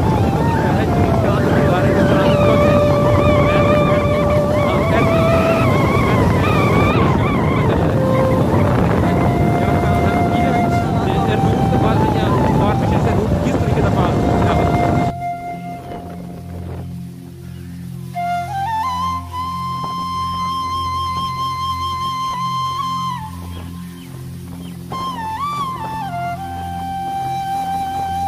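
Wind noise on the microphone and road noise from a moving motorbike, with a wavering melody over it. About halfway through the noise drops away, leaving background music of long held notes over a low steady drone.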